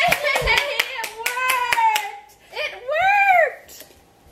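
Hands clapping in a quick run of sharp claps, mixed with excited voices. About three seconds in comes one long exclamation that rises and falls in pitch.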